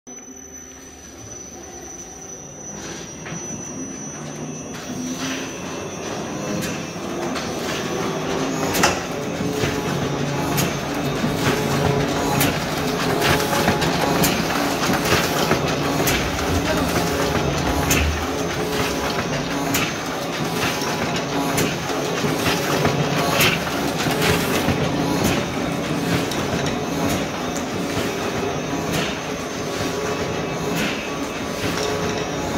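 Heidelberg Cylinder S flatbed die-cutting machine starting up and gathering speed over the first several seconds, then running steadily with a mechanical clatter and a sharp clack about every one to two seconds as it feeds and cuts paper sheets.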